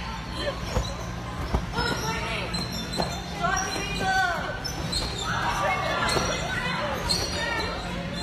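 A basketball thudding: three sharp knocks within the first three seconds, as it is bounced and shot during a game on trampolines.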